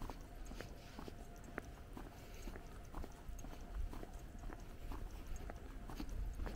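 Footsteps of shoes on brick-paved pavement at a steady walking pace, about two steps a second, over a low rumble.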